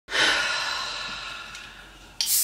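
A woman's long, breathy sigh that starts suddenly and fades away over about two seconds.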